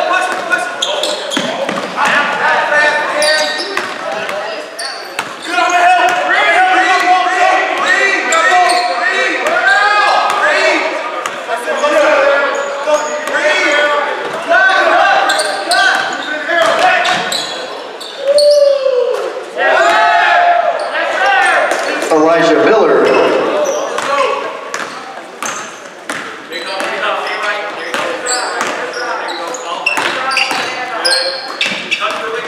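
A basketball being dribbled on a hardwood court during live play, with players and coaches shouting and calling out throughout, in a large gymnasium.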